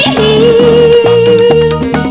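Ecuadorian cumbia band recording: a long held note lasting about a second and a half over a stepping bass line and steady percussion.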